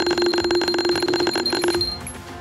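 A bell-type alarm-clock ring, with rapid, even strikes on one pitch, loud over background music. It cuts off near the end.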